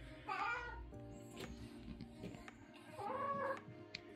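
Domestic cat meowing twice, once about half a second in and again near three seconds, begging for its dinner.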